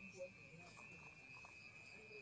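Near silence: faint room tone with a thin, steady high-pitched whine.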